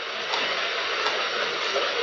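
A steady hiss of background noise, with no other sound standing out.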